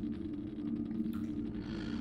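Steady low ambient drone: two held low tones over a dark rumble, with faint scattered ticks above.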